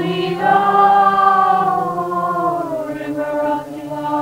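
A group of voices chanting a slow devotional chant together, holding long drawn-out notes; one long phrase gives way to a new note about three and a half seconds in.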